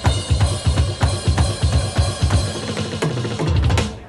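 Behringer XD-series electronic drum kit's sampled sounds played through a Behringer monitor speaker: a fast groove of bass drum and snare hits with cymbals, closing with a fill of lower, ringing drum hits near the end.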